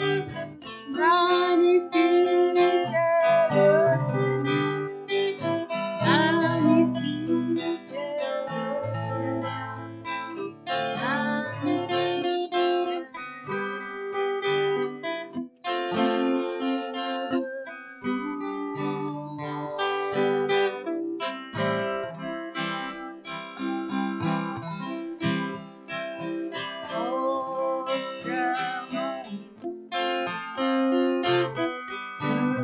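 Acoustic guitar strummed in steady chords, accompanying a woman's singing of a worship song. Her voice is heard through roughly the first twelve seconds and again briefly near the end, leaving the guitar strumming alone in between.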